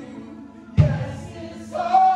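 Live worship music: voices singing slow held notes over a sustained low drone, with a deep low hit about a second in that rings on under the singing.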